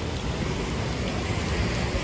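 Steady rain falling on pavement, an even noise with no breaks.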